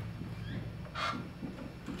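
Dry-erase marker writing on a whiteboard: a short scratchy stroke about a second in, over a steady low room hum.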